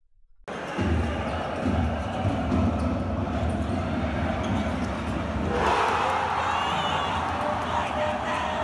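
Packed basketball arena crowd, a loud steady din of fans, recorded on a phone from the stands. It starts abruptly half a second in and turns shriller about six seconds in.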